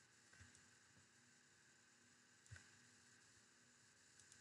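Near silence: faint room tone with two small clicks, one near the start and one about halfway through.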